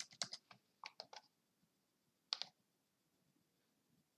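Faint clicking at a computer: a handful of short, sharp clicks in small groups, three close together about a second in and a last pair about two and a half seconds in, over near silence.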